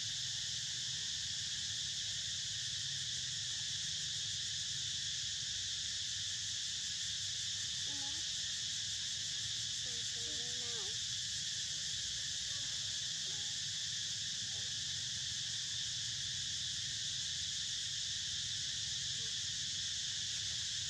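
Steady, high-pitched chorus of insects droning without pause over a faint low hum, with a few faint, short wavering calls around the middle.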